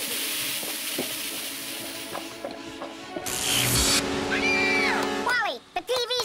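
Cartoon soundtrack: background music under a hiss lasting about three seconds, then a short burst of noise, a held sliding tone, and vocal sounds near the end.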